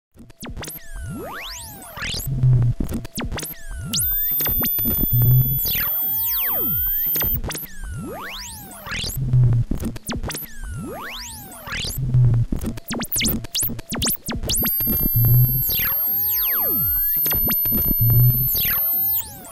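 Ciat-Lonbarde Cocoquantus 2, a looping sampler, playing back loops with swooping pitch glides up and down and a low thump roughly every three seconds. Long steady high tones come in about four seconds in and again near the end.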